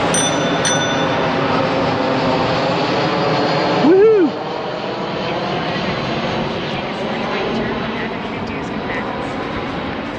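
Steady road and wind noise while riding a bicycle beside traffic at night, with a car passing at the start. About four seconds in, a brief vocal sound rises and falls in pitch.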